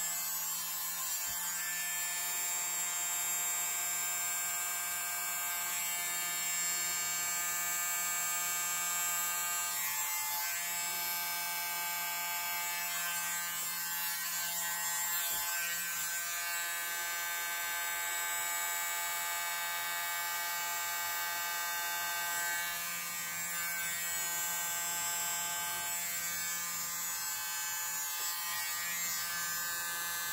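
Small handheld electric mini blower running steadily: a small motor's high whine, blowing air over wet acrylic paint.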